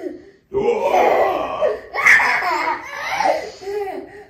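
A small child laughing loudly and without a break, starting about half a second in and loudest around the middle.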